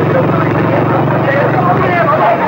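Motorcycle engine running at low speed, a steady low throb that fades near the end, with voices murmuring over it.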